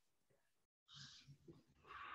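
Near silence on a call's audio, with a faint brief noise about a second in.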